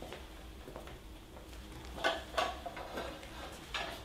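Quiet room with a few light clinks and knocks of china plates being handled, one about halfway through and another near the end.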